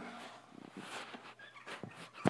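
Quiet cartoon sound effects played through a television's speaker as a pen signs a cartoon duck's beak.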